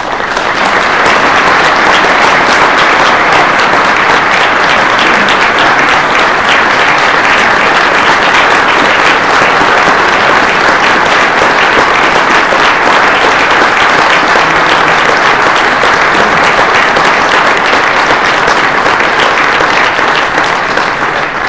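Audience applauding, building up within the first second and then holding steady and loud.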